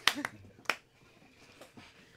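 A few scattered handclaps from a small group, trailing off within the first second, the last a single sharp clap.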